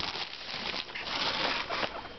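Plastic bag of Timothy hay crinkling and rustling as it is handled, louder in the second half.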